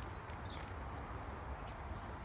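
Outdoor background noise: a steady low rumble with a few faint, scattered knocks.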